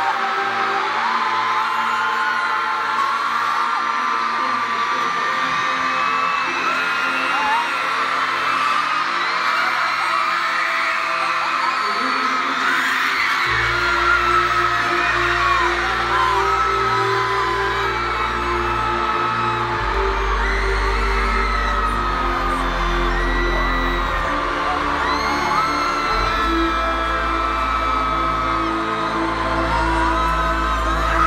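Amplified pop concert intro music in an arena, building up as a deep bass comes in just before halfway and grows heavier about two-thirds through, under a large crowd of fans screaming and whooping throughout.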